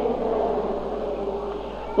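A held note of a devotional song fades away slowly between two sung lines, leaving a faint wavering tone before the next line begins.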